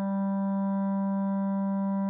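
A recorded clarinet long-tone sample playing back: one low note held steady at an even level, with added convolution reverb and EQ.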